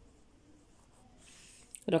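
Faint scratching of a pen writing a short word on a paper workbook page, strongest in the second half.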